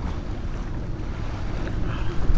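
Steady low rumble of wind on the microphone.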